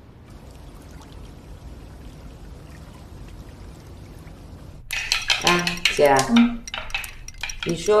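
Kitchen clatter of dishes and utensils being handled, with sharp clinks, starting about five seconds in after a faint steady hiss.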